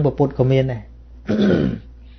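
A man's voice speaking a few words in Khmer, then a short throat clear about a second and a half in.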